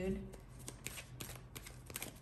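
Tarot cards being handled: a run of quick, light clicks and flicks of card stock.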